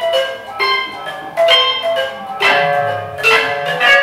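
Tuned mallet percussion: metal bars struck one note after another, several ringing notes a second in a free, unmetered run, with a couple of harder, louder strikes in the second half, over a faint low sustained tone.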